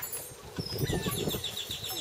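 A small bird's rapid trill of short high notes, about ten a second, starting about a second in, with a brief chirp just before it. Under it, light irregular knocks as sausages are turned on a metal smoker grate.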